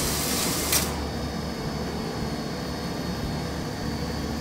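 A near-infrared coffee roaster running steadily with a low hum and airy hiss, its exhaust fan drawing hot air out to pull the drum back down to the preheat temperature. About a second in there is a short click, and the high part of the hiss cuts off.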